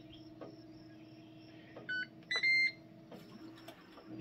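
Ninja Woodfire grill's control panel beeping as its buttons are pressed to skip the preheat: a short lower beep about two seconds in, then a longer, higher beep just after, over a faint steady hum.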